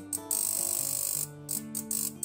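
Background music over a small 5 V relay clicking rapidly and irregularly, with a short buzz-like burst about half a second in. A finger on a transistor's base sets the relay circuit oscillating, which is taken as a sign that the circuit is working correctly.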